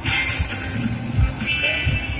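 Slot machine bonus-game sound effects and electronic music, with a short burst of sound at the start and chiming tones coming back near the end.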